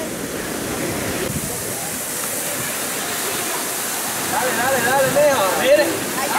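Steady rush of splashing fountain water. A voice talks over it in the last couple of seconds.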